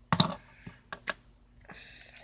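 Plastic clicks of a Transformers Dinobot Slug action figure being handled and its parts snapped into place during transformation: a loud click cluster at the start, then a few lighter clicks about a second in.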